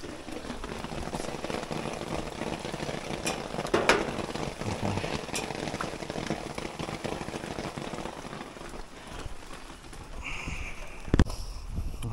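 Steady rain falling, an even hiss of drops, with a few sharp knocks; the loudest knock comes near the end.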